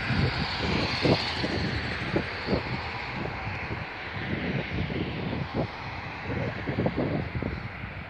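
A car driving past on the street, its tyre and engine noise loudest about a second in, then a steady traffic hiss. Wind buffets the microphone with irregular low thumps.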